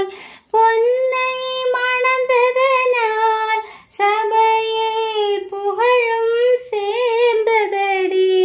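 A woman singing a Tamil song alone without accompaniment, in long held, wavering notes. She pauses briefly for breath just after the start and again near the middle.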